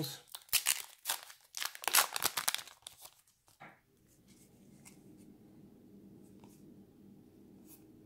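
Wrapper of a trading card pack being torn open and crinkled for the first three or four seconds. After that, quiet room tone with a few faint ticks as the cards are handled.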